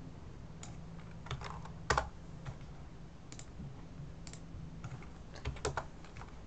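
Keys of a computer keyboard typed in sparse, irregular strokes: a few keystrokes around two seconds in and a quick run near the end, over a steady low hum.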